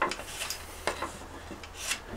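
A large folding knife's blade slicing through twisted rope against a wooden board: a few short, crisp crunches as the fibres part and the edge meets the wood, the blade going through easily.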